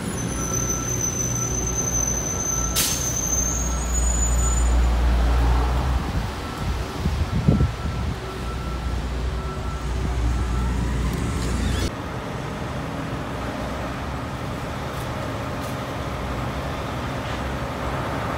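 City street traffic noise, a steady rumble and hiss of passing vehicles heard from the sidewalk. The low rumble drops off suddenly about twelve seconds in.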